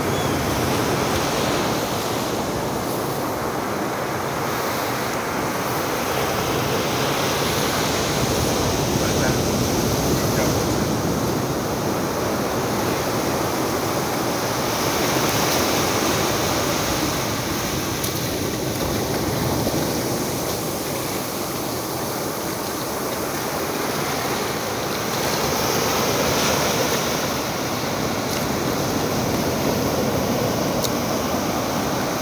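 Ocean surf breaking and washing up a sandy beach: a steady rush of water that swells and eases every several seconds.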